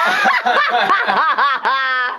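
A person laughing hard in a quick run of short rising-and-falling bursts, ending in a higher-pitched note near the end.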